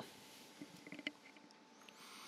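Near silence: faint room tone, with a few faint short clicks about a second in.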